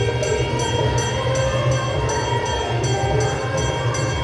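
Temple aarti bells struck in a steady rhythm of about four strokes a second, over a continuous sustained tone and a low rumble.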